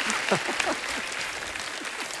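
Studio audience applauding, the clapping slowly dying down, with a faint voice or two over it.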